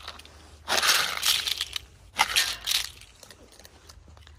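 In-shell almonds poured out of a plastic tub, rattling and clattering down in two rough rushes of about a second each.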